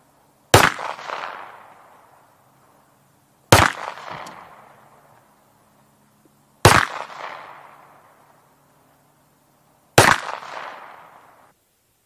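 Four single pistol shots, about three seconds apart. Each is a sharp crack followed by an echo that dies away over a second and a half or so.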